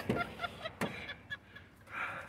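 A pickup truck's rear door being opened: a sharp latch click a little under a second in, a few short faint sounds, then a rustle near the end.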